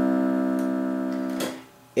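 Electronic keyboard sounding a single held note, the do (C) that closes the octave, steady and fading a little before it stops abruptly about one and a half seconds in as the key is released.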